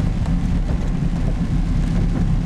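Steady low rumble of a car's engine and tyres on a wet road, heard from inside the moving car's cabin.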